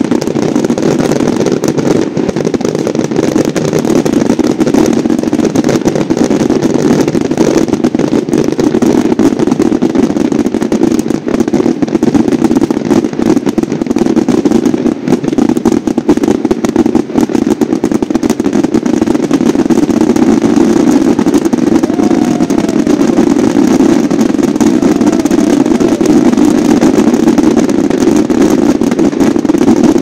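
Volcán de voladores: a mass of ground-launched rockets firing together in a continuous dense rush of noise, crackling with many small pops and bangs.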